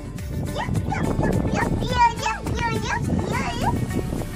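A young child's high-pitched voice talking, with music playing in the background.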